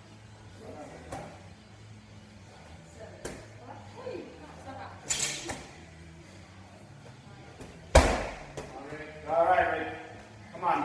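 A 20-pound medicine ball thudding during wall balls, a few single knocks seconds apart, then one loud heavy thud about eight seconds in as the ball is dropped to the floor. A voice follows near the end.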